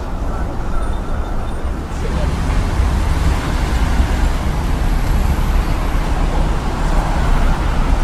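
City street traffic noise: cars running along a road, a steady hiss over a heavy low rumble that grows fuller and brighter from about two seconds in.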